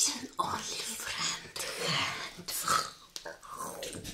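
Whispered speech.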